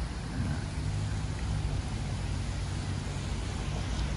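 Steady hiss of rain falling on a river, with a low steady hum of road traffic underneath from about half a second in.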